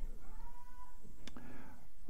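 A faint, drawn-out high-pitched call lasting about a second, rising slightly and then holding, followed by a single sharp click.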